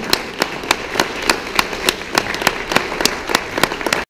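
Audience applauding, with sharp hand claps close to the microphone standing out several times a second.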